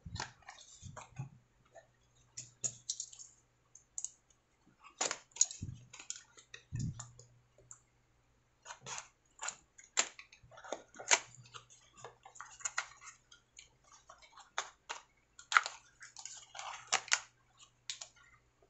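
A small cardboard box being opened by hand and its folded cardboard insert worked out: irregular crackles, scrapes and clicks of cardboard flaps and packaging. A faint steady low hum runs underneath.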